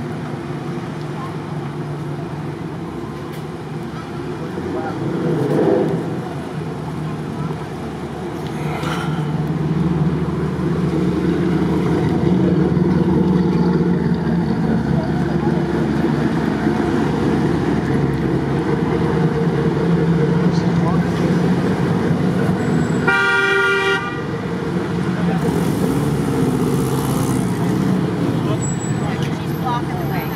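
Street traffic at an intersection: vehicle engines running, growing louder about ten seconds in, with a single vehicle horn blast about a second long roughly three-quarters of the way through.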